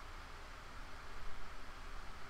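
Faint steady hiss with a low hum underneath: room tone and microphone noise in a pause between words, with slight rises in level about halfway through.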